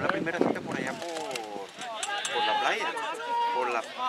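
Spectators talking, several voices overlapping with no words made out. In the second half one voice holds a longer call.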